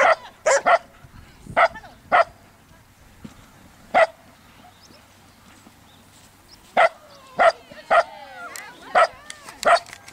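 A dog barking in about eleven short, sharp barks, some in quick pairs, with a quiet gap of nearly three seconds in the middle. This is the excited barking of a dog on an agility run.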